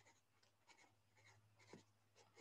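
Very faint pencil scratching on paper as a row of digits is written, over a faint steady low hum.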